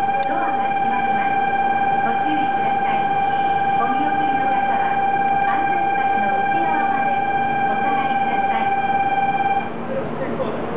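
Shinkansen platform departure signal: a steady, unbroken electronic tone that cuts off suddenly near the end, marking that the train is about to close its doors and leave.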